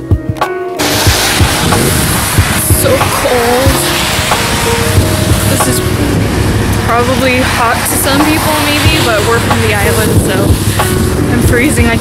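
Background music for under a second, then an abrupt switch to loud outdoor street sound: wind buffeting the camera microphone, road traffic and indistinct voices.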